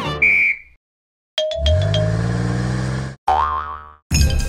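Cartoon sound effects and music: a short high beep at the start, then a second of silence, then a held musical chord, then a wobbling "boing" spring effect near the end that dies away.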